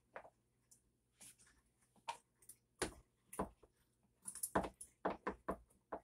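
Wooden spoon stirring apple chunks in water inside a large glass jar, knocking against the glass in an irregular series of short knocks that come closer together in the second half. The stirring dissolves the sugar for an apple cider vinegar ferment.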